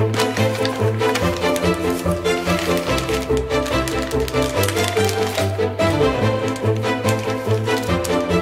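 Background music with a steady, even pulse of short repeated notes.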